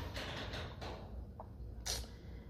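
Quiet room tone with a few faint handling sounds of fingers turning a small stone, and a short intake of breath near the end.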